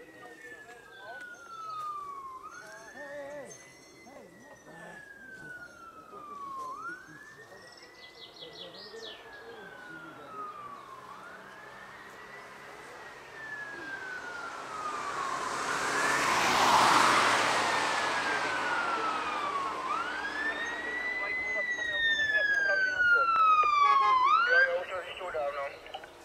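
Fire engine siren wailing, rising quickly and falling slowly about every four and a half seconds, and growing louder as it approaches. A loud rush of noise swells and fades around the middle. Near the end the siren switches to a few quick yelps and then cuts off as the truck stops.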